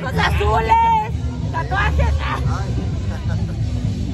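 Voices talking for the first couple of seconds over a steady low rumble of outdoor background noise and chatter.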